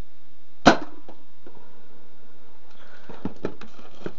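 A Nerf blaster fires once, a single sharp crack just under a second in. The dart does not pop the inflated bag it is aimed at. A few quieter clicks and knocks of handling follow about three seconds in.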